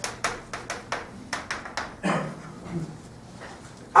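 Chalk tapping against a blackboard as digits and dots are written, about a dozen quick sharp taps in the first two seconds. A quiet murmured voice follows.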